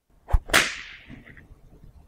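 Comedy sound-effect sting marking the joke's punchline: a short low thump, then a sharp, bright crack that rings out and fades over about a second.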